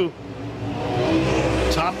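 Super late model dirt race cars' V8 engines running hard, swelling louder as the cars come past.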